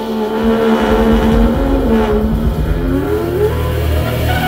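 Live jazz band: a trumpet holds a low, rough note, dips, then slides upward near the end, over electric bass and drums.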